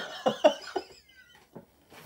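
A person laughing: about four short bursts of laughter in the first second, then trailing off.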